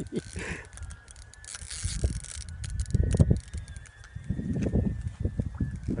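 Fishing reel ticking in rapid fine clicks as a big catfish is played on the rod, with dull rumbles of handling and wind on the microphone.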